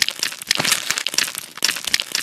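A crunchy ASMR scraping sound effect for a knife scraping crusty growths off a scalp: a dense run of sharp crackles and crunches in quick succession, loud throughout.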